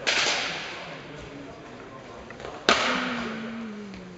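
Two sharp clashes of sword-and-buckler sparring weapons, one at the start and a louder one about two and a half seconds later, each ringing on in the echo of a large hall.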